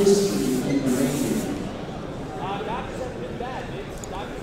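A man's voice during the first second and a half, then faint distant voices over the murmur of a large hall.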